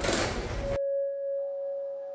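Busy background noise cuts off abruptly just under a second in, replaced by a single sustained bell-like tone with several higher tones joining it: the opening of ambient background music.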